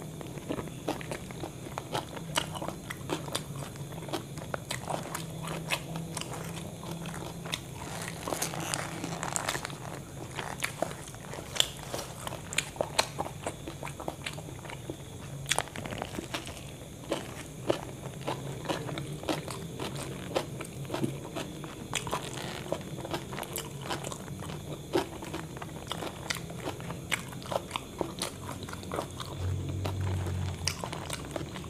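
Close-miked eating: a person biting into and chewing a soft-bun burger with meat patty, lettuce and cucumber. Many short wet clicks and crunches come irregularly throughout.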